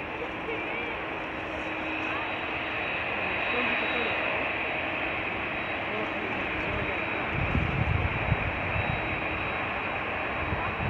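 Jet airliner engines running steadily as aircraft taxi, a dense whooshing whine. Heavy gusts of wind buffet the microphone in the second half.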